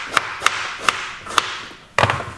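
Kitchen knife knocking on a chopping board as fruit is cut, about five sharp knocks roughly half a second apart.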